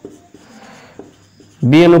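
Marker pen writing on a whiteboard: faint scratching strokes with a few light taps as the letters go down.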